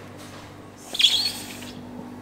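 Sliding glass lid of an ice cream display freezer being pushed open, giving a short, high, wavering squeak about a second in, over a steady low hum.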